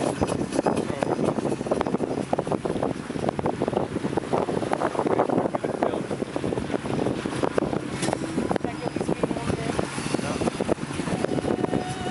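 Sailing yacht under way: a steady low engine hum beneath wind buffeting the microphone.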